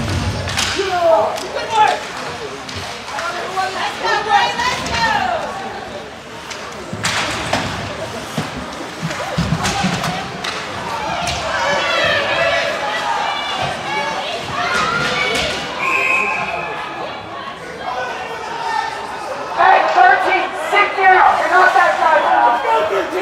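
Ice hockey game heard from rinkside: voices and shouts from players and spectators, with occasional sharp knocks of puck and sticks against the boards. A short referee's whistle blast comes about two-thirds of the way through, and the voices grow louder near the end.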